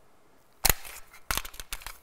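A few sharp metallic clicks, about four in a second and a half, from a semi-automatic pistol and its magazine being handled at the grip during a reload.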